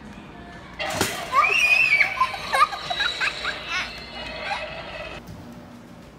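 A Halloween animatronic doghouse prop, set off by its step pad, playing its recorded sound effect through a small speaker: a sudden knock about a second in, then about four seconds of gliding, pitched sounds that cut off near the end.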